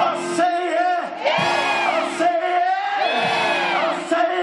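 A man's voice singing or chanting through a microphone and PA in long, held, wavering notes, over a steady sustained instrumental chord, with the congregation's voices underneath.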